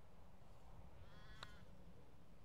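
Quiet open-air near-silence broken about a second in by one faint, distant call from a carrion crow, ending in a brief sharp tick that may be the putter striking the golf ball.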